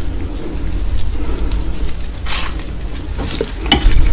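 Close-miked chewing of a mouthful of seaweed-wrapped fried instant noodles and kimchi. There is a short crackly burst a little past the middle and a few sharp clicks near the end.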